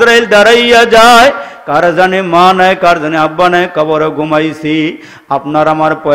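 A man's voice chanting a sermon in a melodic, sung style, with long held notes and a wavering ornament about a second in. He pauses briefly for breath near the end.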